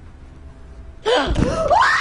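A person's sudden sharp gasp that rises in pitch into a scream, breaking in about a second in.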